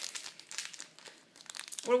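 Foil wrapper of a Pokémon card booster pack crinkling as it is handled, a quick run of crackles that dies away about a second in.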